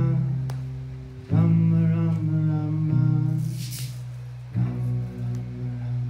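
Live kirtan music: sustained harmonium chords with acoustic guitar, the chord changing every second or two, and a brief high swish about halfway through.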